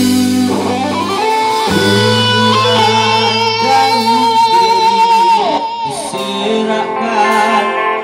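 Rock band playing live in a rehearsal room: an electric lead guitar holds long sustained notes with a wavering vibrato, bending down about five and a half seconds in, over drums and a second guitar.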